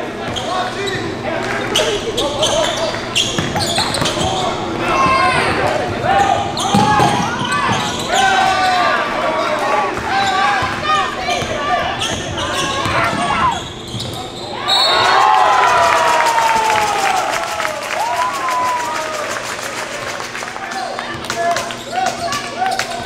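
Live game sound of a basketball being dribbled on a wood gym court, with players' and bench voices echoing in a large hall and a steady low hum underneath.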